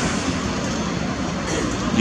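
Steady city street noise, a constant wash of traffic.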